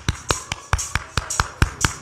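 Hand clapping together with a hand-held tambourine struck in time, a quick steady beat of about five hits a second.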